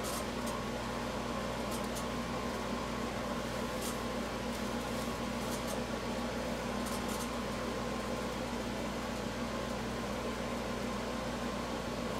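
Steady mechanical hum of room ventilation, an even drone with a low tone underneath and a few faint high ticks.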